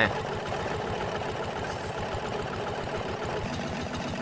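Small engine on a wooden diving boat running steadily, driving the air supply that feeds the diver's breathing hose.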